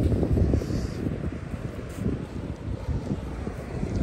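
Wind buffeting the microphone: a low, uneven, gusting rumble.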